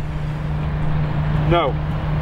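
A steady low motor drone with one even pitch, with a single short spoken word about one and a half seconds in.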